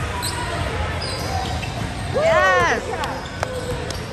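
A basketball bouncing on a hardwood gym floor, with a few sharp bounces near the end as a player dribbles. About two and a half seconds in, a short high sneaker squeak on the court rises and falls, the loudest sound in the stretch.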